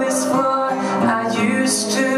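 Male voice singing a slow ballad into a microphone over acoustic guitar, live, with long held notes and a hissed 's' near the start and again near the end.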